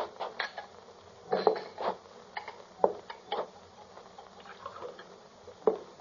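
Radio-drama sound effects of a bottle and drinking glasses being handled on a bar: a string of light, irregular clinks and knocks.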